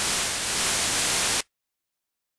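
Television-style static hiss that cuts off suddenly about one and a half seconds in.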